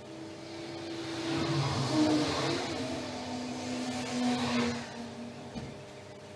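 A motor vehicle passing by, swelling up and fading away over about five seconds, its engine tone dropping in pitch as it goes.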